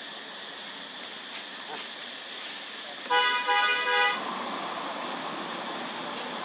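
A vehicle horn honks three times in quick succession about three seconds in, the loudest sound here. It plays over a steady high-pitched background drone and is followed by a low rushing noise like passing traffic.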